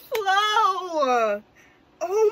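A woman's long, wordless excited cry, about a second and a half, sliding down in pitch. It stops about two-thirds of the way through.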